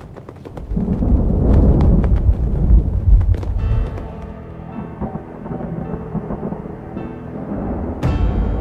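A deep thunder rumble swells about a second in and dies down a couple of seconds later. Held music notes come in and carry on under it.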